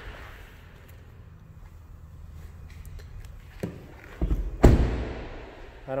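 A car door, the driver's door of a 2021 Toyota Highlander Hybrid, is shut with one heavy thump about three-quarters of the way in, after a couple of lighter knocks. A low steady hum sits underneath.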